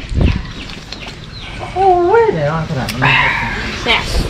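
A person cries out "oy" with a rising-and-falling pitch, then laughs "ha ha", about two seconds in.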